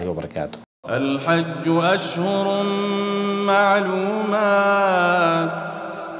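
A man reciting the Quran in a slow, melodic chant with long held notes, beginning about a second in after a brief silent gap. The first half-second holds the tail of a man's speech.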